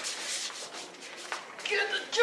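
Rustling and shuffling of people moving close past the microphone, clothing brushing, with a short click about a second and a half in, and a voice starting near the end.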